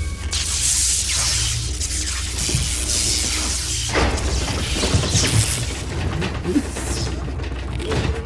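Film action soundtrack: a steady deep rumble under music, with whooshes, booms and crashing debris, a sharp new burst about four seconds in.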